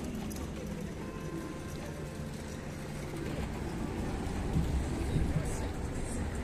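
Town street ambience: indistinct voices of passers-by over a steady low traffic rumble, with a few light knocks near the end.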